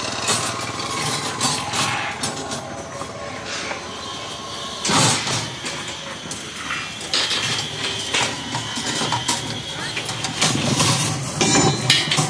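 A small motorbike engine running as the bike passes, with scattered metallic clinks and knocks from steel rebar being handled.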